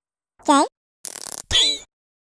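Sped-up, high-pitched cartoon character voice sounds. A short pitched vocal call comes first, then about half a second of hiss, then a click and another brief pitched call.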